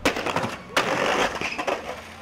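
Skateboard on concrete: a sharp clack right at the start, a second hard impact under a second in, then gritty rolling and scraping of the wheels and board.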